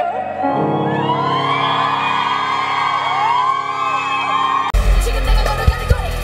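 A sung note breaks off, then a crowd screams and cheers in many overlapping high voices over a held musical chord. Near the end it cuts abruptly to loud live pop music with a heavy bass beat.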